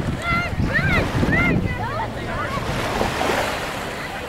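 Wind buffeting the microphone over small waves washing on a beach shore. In the first couple of seconds there are several high-pitched voices calling out.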